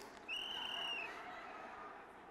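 A single high whistle from the audience, held for under a second with a slight rise and fall in pitch, over faint crowd cheering that fades away.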